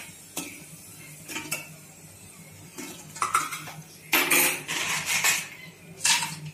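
A steel slotted ladle clinks and scrapes against a small aluminium kadai as puris are turned in hot oil. There are scattered light knocks, then a louder stretch of metal clattering about four seconds in that lasts over a second.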